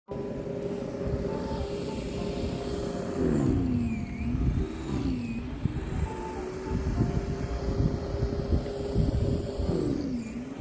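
Corded electric snow thrower's motor running with a steady whine that sags in pitch and recovers, about three seconds in and again near the end, as it takes in snow. A low rumble of wind on the microphone lies underneath.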